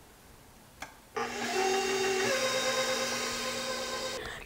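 Electric stand mixer switched on at speed two about a second in, its motor running with a steady whine while it mixes cookie dough; the pitch shifts once a little over a second after it starts.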